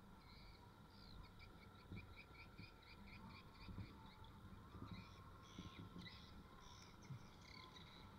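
Faint animal calls: a rapid run of short high chirps, about six a second, for a few seconds, then scattered chirps. Under them is a low, faint rumble.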